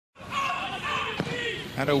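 A soccer ball struck once, a sharp thud about a second in, amid players' shouts on the pitch.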